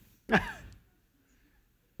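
A person's short sigh, falling in pitch, about a third of a second in.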